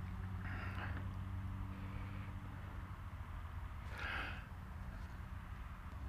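Faint steady low hum, with two soft breaths close to the microphone, about half a second in and again about four seconds in.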